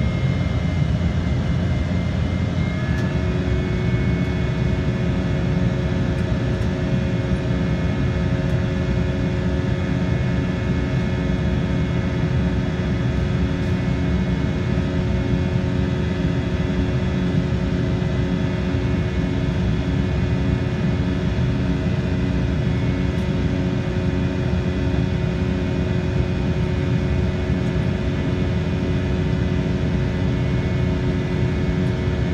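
Cabin noise of an Embraer E-190 climbing after takeoff: a steady rush of air and engine noise from its turbofans, with several steady whining tones over it. A few of the tones change pitch about three seconds in.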